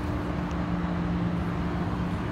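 Steady machinery hum with a constant low drone.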